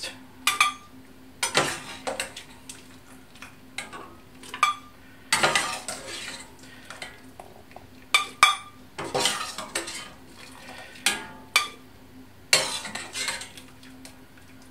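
Metal slotted spoon scraping and clinking against a stainless steel saucepan and a glass blender jug as cooked carrot chunks are scooped out and tipped into the jug, a short clatter every second or two.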